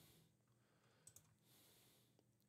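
Near silence with two faint, short mouse clicks close together about a second in.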